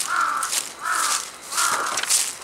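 A noisy crow cawing: three caws about two-thirds of a second apart.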